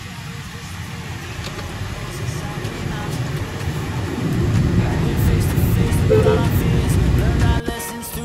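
Road and engine noise heard inside a moving car's cabin: a low rumble that grows steadily louder. It is cut off abruptly near the end, where music comes in.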